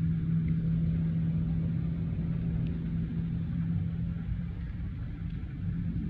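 An engine idling: a steady low hum at a constant pitch that swells slightly at the start and holds evenly throughout.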